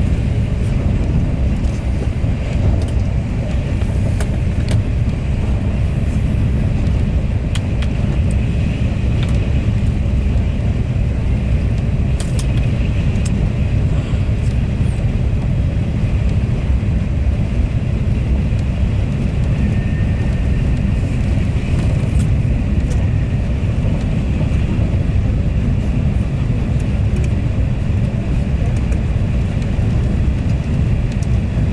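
Steady low rumble of a Thalys TGV high-speed train running at speed, heard inside the passenger coach, with a few faint ticks from the coach.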